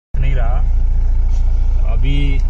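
Police SUV's engine idling, a steady low rumble with an even pulse, with a short burst of a voice over it early on.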